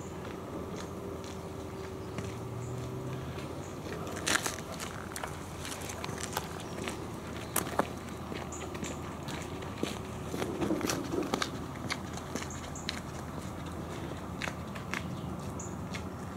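Footsteps on a gritty dirt path littered with dry leaves: irregular crunches and clicks under a steady low background. A few sharper, louder crunches come about four and a half and seven and a half seconds in, and a busier patch around ten to eleven seconds.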